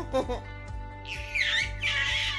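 A baby squealing: loud, high-pitched, wavering shrieks starting about a second in, after a short babble at the start, over steady background music.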